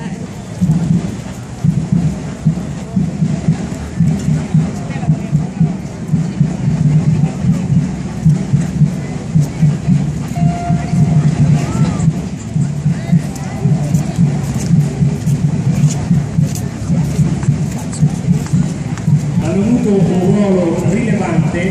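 Parade drums beating a steady marching rhythm, with the murmur of a crowd underneath.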